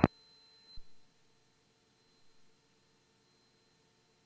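Near silence in the cockpit radio audio between transmissions: a faint steady hum, with one soft click just under a second in.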